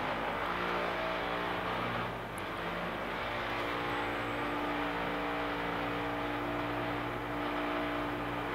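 Steady low mechanical hum made of several held tones, with a faint hiss: the room's background noise.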